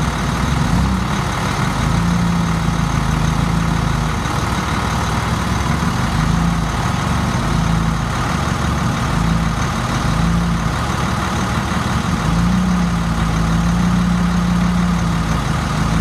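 Propane-fuelled Caterpillar forklift's engine running steadily while it carries a car on its raised forks, with a low hum that swells and fades every few seconds.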